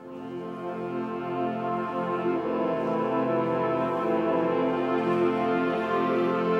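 A college marching band's brass section playing a slow passage of long held chords. It comes in softly on the downbeat and swells over the first second or two, then sustains at full volume.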